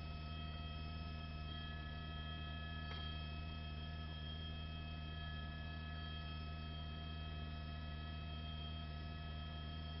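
Steady low electrical hum with several steady overtones, a faint click about three seconds in.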